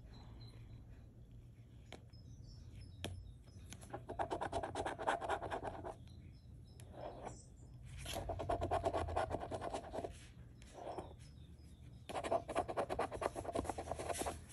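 A coin scratching the coating off a paper scratch-off lottery ticket, starting a few seconds in. It comes in several bursts of rapid strokes with short pauses between them.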